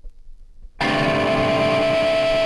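Faint background noise, then a little under a second in a loud distorted electric guitar chord cuts in and rings on steadily with a high sustained tone over it: the opening of a hardcore punk song.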